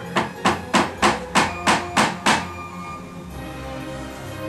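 A hammer driving a stainless steel nail overhead: about eight quick blows, roughly three a second, stopping a little over two seconds in.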